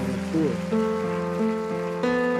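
Slow ballad on piano, held notes and soft chords, with a boy's voice finishing a short gliding sung phrase about half a second in; after that only the piano sounds.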